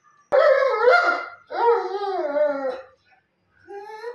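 German Shepherd dog howling: two long howls with wavering pitch, the second falling away at its end, then a shorter call near the end.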